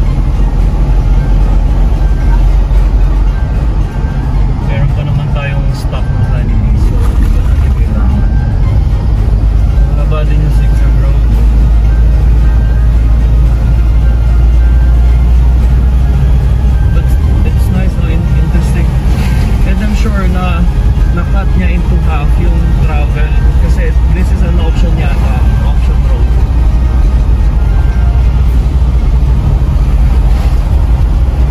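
Car cabin noise while driving: a loud, steady low rumble of the engine and tyres on the road, heard from inside the car.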